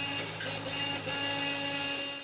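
Old pickup truck's engine running steadily as the truck drives slowly, a steady hum with a higher whine over it and no change in pitch.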